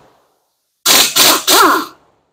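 Pneumatic impact wrench with a 14 mm socket running in three quick trigger bursts, loosening a front brake caliper bolt. Its pitch glides up and down in the last burst.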